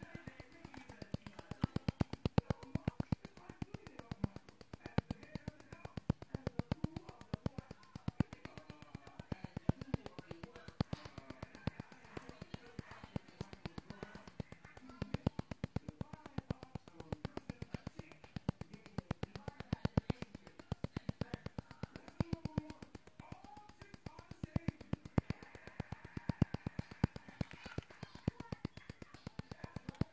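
Rapid, uneven clicking, several clicks a second, from an ultrasonic skin scrubber running in its infusion mode as its metal blade is worked over the skin, with faint background sound underneath.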